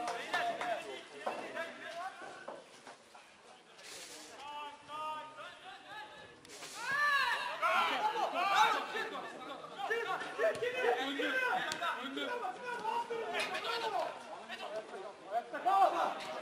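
Indistinct shouting and chatter from players and coaches on a football pitch. The voices drop off for a few seconds about two seconds in, then pick up again.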